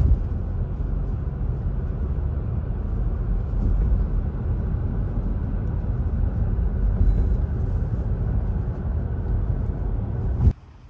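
Steady low rumble of a car driving along, heard from inside the cabin: road and tyre noise with the engine underneath.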